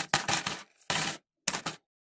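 Coins dropping and clinking into a glass jar: several short, bright chinks over about the first second and a half, ending abruptly.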